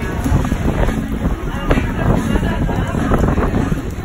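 Wind and rain of a rainstorm, heard as a loud, continuous rumble of wind on the microphone, with voices underneath.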